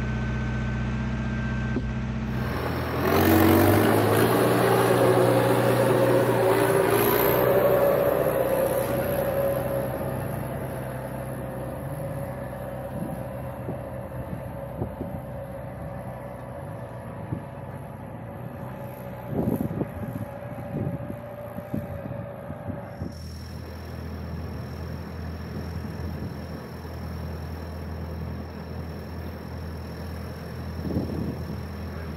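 Engines running across several shots: a tractor idling steadily, then, about three seconds in, a louder engine that slowly fades over several seconds, with a few knocks near the middle. Later a tractor runs steadily in the background.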